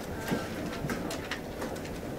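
Room sound of a seated dining audience in a hall: a low steady murmur with scattered light clicks and clinks of cups and crockery.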